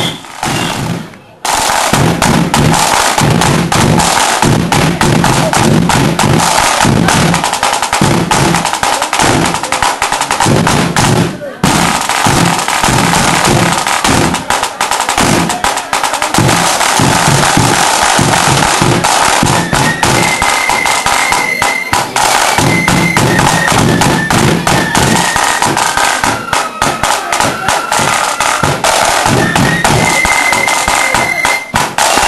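Marching flute band playing: rolling snare drums and a bass drum under a high flute melody. The playing breaks off briefly about a second in and dips again near twelve seconds.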